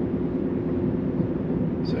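Steady road and tyre rumble heard inside the cabin of a Tesla electric car driving at road speed.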